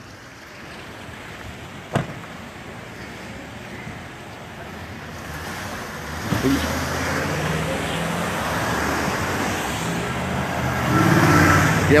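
SUVs driving past close by: engine and tyre noise swells from about six seconds in and is loudest near the end. A single sharp knock comes about two seconds in.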